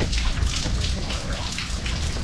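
Steady rain falling, with many small drop hits heard close by.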